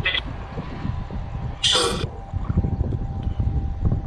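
Spirit box scanning radio frequencies, giving a choppy, crackling hiss with a brief louder burst of radio sound about two seconds in.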